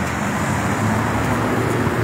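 Road traffic going by: a steady rushing noise of passing vehicles, with a low hum joining about a second in.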